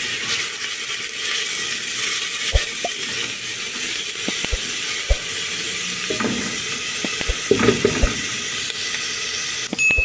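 Diced onion sizzling in hot oil in a pot as it is stirred with a silicone spatula. A few light knocks of the spatula against the pot come at intervals.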